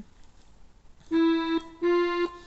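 Casio LK-160 electronic keyboard on its accordion voice playing two held notes of a slow melody, the first about a second in and the second a little higher near the end.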